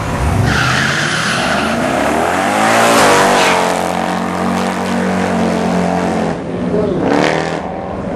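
Two drag cars, a Corvette and an Audi hatchback, launching off the start line: a brief tire squeal, then the engines rev up with rising pitch to the loudest point about three seconds in. The pitch drops at a gear change, holds steady, and climbs again near the end.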